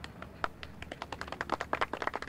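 A quick, irregular run of sharp taps and clicks that grows denser toward the end.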